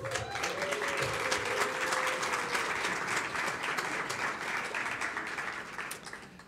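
Audience applauding: many hands clapping at once in a dense, steady patter that starts abruptly and dies away near the end.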